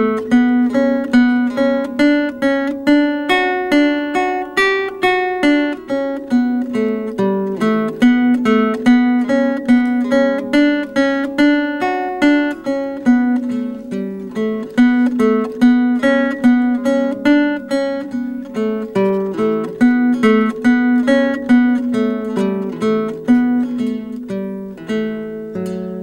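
A lute and a guitar playing a duet, a continuous run of plucked notes at about four a second.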